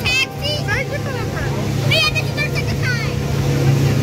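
Water taxi's motor running steadily under way, a continuous low hum.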